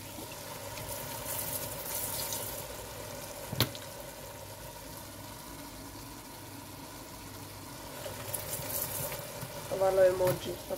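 A pot simmering on the stove: a steady bubbling hiss under a faint steady hum, with a single sharp click about three and a half seconds in.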